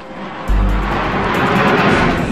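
Jet airliner engine roar, coming in suddenly about half a second in as a deep rumble under a rushing noise that swells and holds.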